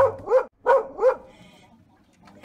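A small dog barking four times in quick succession, in two pairs, the barks ending a little over a second in.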